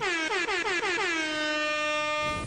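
Horn sound effect: a fast run of short blasts sliding down in pitch that settles into one long held blast.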